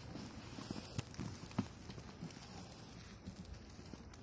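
Faint, irregular crunching and knocking in snow, with two sharper clicks about one and one-and-a-half seconds in.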